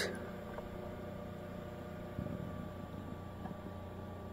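Steady low electrical hum with faint hiss, with a small brief rustle about two seconds in.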